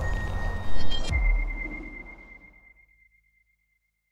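Cinematic logo-sting sound effects: the tail of a deep boom, then a second deep hit about a second in with a thin, steady high ringing tone, all fading away over the next second and a half.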